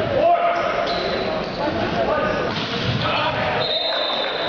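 Volleyball rally in a gymnasium: the ball struck several times, with players and spectators shouting in the echoing hall.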